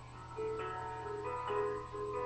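Quiet instrumental accompaniment playing the song's closing bars: a slow string of soft single pitched notes, a few a second, beginning about half a second in, with no voice over them.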